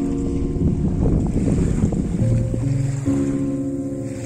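Background music of sustained chords that change every second or so. A rushing noise swells under it in the middle and fades again.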